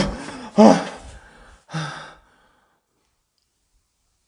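A person's loud gasping breaths, three of them in the first two seconds. Then the sound cuts off suddenly to silence.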